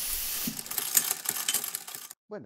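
Clockwork sound effect of gears ratcheting: a quick series of mechanical clicks, about six a second, after a short hiss of steam at the start.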